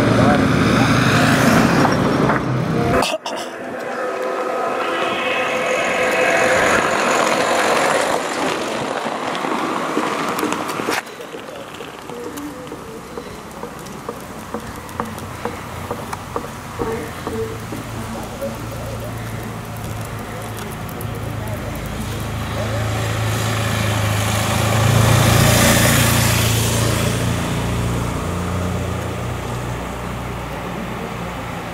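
Motor vehicles passing close by on a road: a van drives past in the first few seconds, and the sound breaks off abruptly about 3 seconds in. Later a motorcycle engine rumbles nearer and passes, loudest about 25 seconds in.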